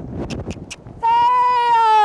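A woman's long, drawn-out shouted call to a horse and rider, starting about a second in and held on one steady pitch before a quick rise and fall. A few short knocks come before it.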